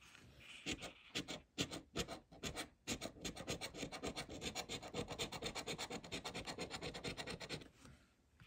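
A large metal coin scraping the coating off a paper lottery scratch-off ticket in quick, repeated strokes, starting about a second in and stopping just before the end.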